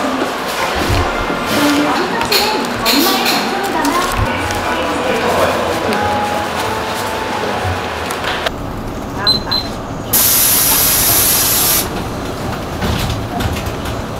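Busy fast-food restaurant background: many people chattering. After a sudden change, a loud steady hiss lasts about two seconds near the end.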